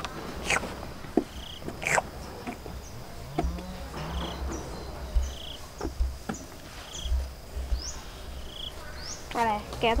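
Ostrich pecking feed from a concrete trough: scattered sharp knocks of its beak. Behind them a short high chirp repeats about once a second.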